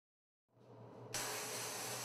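Silence, then a low hum, then about a second in a sandblasting gun starts with a sudden steady hiss as abrasive is blasted onto the exposed parts of a masked glass pane.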